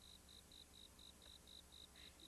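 Faint cricket chirping, a high, even chirp repeating about four times a second over near silence.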